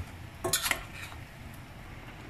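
A metal spoon clinking and scraping against a stainless steel pot as pieces of liver are stirred, with a knock at the start and a few sharp clinks about half a second in.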